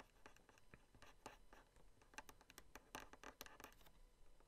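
Faint scratching and ticking of a pen stylus making quick short strokes on a Wacom graphics tablet, in bursts about a second in and again in the last second or so.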